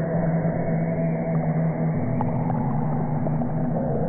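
A steady low drone of sustained tones over an even rushing hiss, the tones shifting to a different pitch about halfway through.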